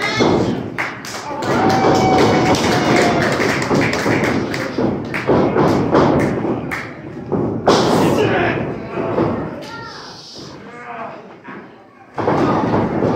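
Sharp slaps and thuds of pro wrestlers' strikes and footwork on the ring, several impacts scattered through, over people's voices shouting in the hall.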